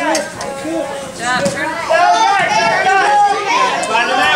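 Indistinct chatter: several voices talking, with no clear words.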